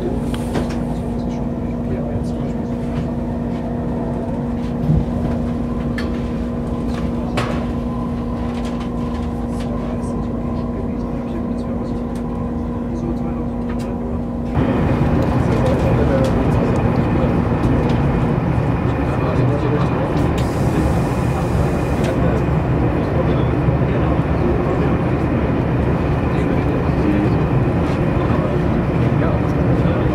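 Running noise of an ICE high-speed train heard from inside, with a steady low hum through the first half. About halfway in, the sound switches abruptly to a louder, rougher rushing and rolling noise.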